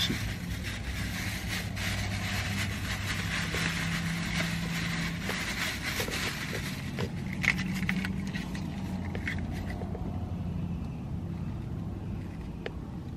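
A plastic shopping bag rustling and crinkling as hands rummage through it, with many small crackles, over the steady low hum of an idling car. The rustling dies down near the end.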